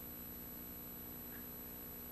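Faint steady electrical hum with a thin high whine and light hiss: background tone of the recording, with nothing else sounding.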